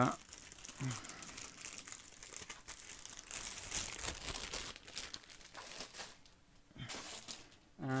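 Clear plastic bag crinkling and rustling as it is handled, for about six seconds, then stopping.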